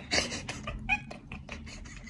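A cat vocalizing: one loud, rough call just after the start, followed by a rapid string of short clicking chirps.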